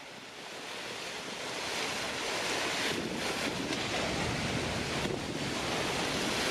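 Ocean surf washing onto a shore, a steady rushing that swells over the first couple of seconds and then holds.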